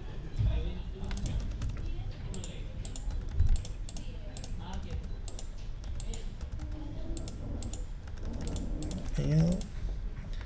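Computer keyboard typing in short, irregular runs of quick key clicks.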